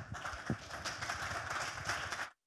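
Audience applauding: a steady, dense patter of many hands clapping.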